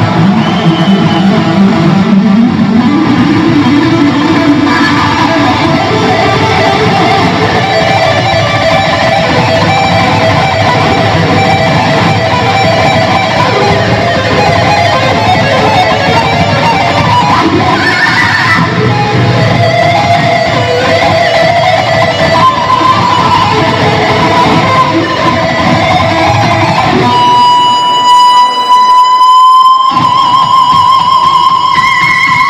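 Electric guitar playing a live solo: dense runs of fast notes, then near the end a single long held high note that bends slightly upward.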